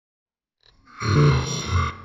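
A low, gruff vocal grunt about a second long, starting about a second in and swelling twice.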